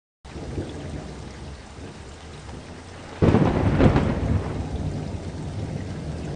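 Rainstorm sound effect: steady rain that starts abruptly, with a sudden loud thunderclap about three seconds in that rumbles and fades under the rain.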